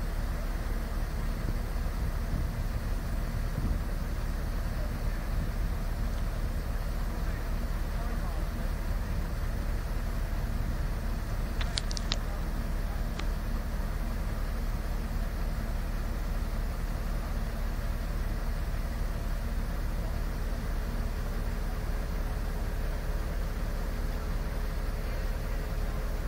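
Heavy machinery's engine running steadily, a low even drone. A few brief high clicks come about halfway through.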